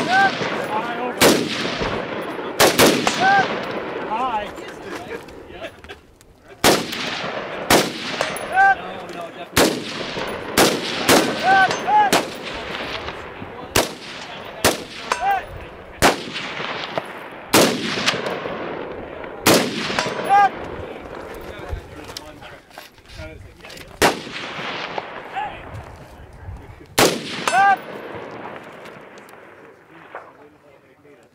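Semi-automatic 5.56 mm AR-15 carbines firing single shots at an irregular pace, about twenty in all, each shot echoing off the canyon. Many shots are followed a moment later by a short metallic ring, the sound of steel targets being hit at longer range.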